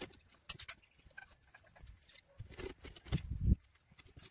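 Scattered light clicks and knocks of car wiring-harness connectors and a sheet-metal head-unit housing being handled at the dashboard, loudest about three seconds in.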